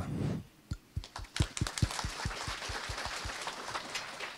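Audience applauding: single claps stand out about five a second over a growing wash of many hands clapping, then fade.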